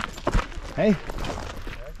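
A man's short call of "hey" about a second in, after two dull thumps right at the start.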